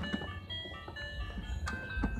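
Toy ride-on car's musical steering wheel playing a simple electronic beeping tune, with a few sharp clicks; a low rumble comes in about halfway through.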